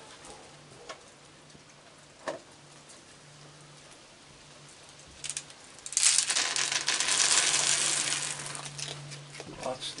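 Dry kibble poured from a metal pan onto wooden deck boards, a dense rattling patter of small hard pieces. It starts about six seconds in and lasts about three seconds.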